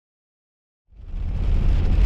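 Silence, then about a second in a Jeep Wrangler's driving noise starts: a steady deep engine and road rumble with a hiss over it, as it runs along a dirt track in the rain.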